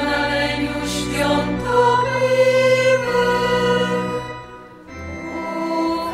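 Women's choir singing a slow hymn in long held notes, with a brief break between phrases near the end.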